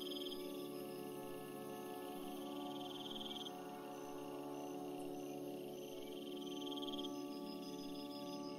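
Soft ambient meditation music of sustained, drone-like tones, with a nature layer of crickets chirping: three short pulsed trills stand out, near the start, about three seconds in and about seven seconds in.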